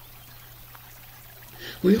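A pause in a man's amplified speech: a steady low electrical hum under faint hiss, with his voice coming back in near the end.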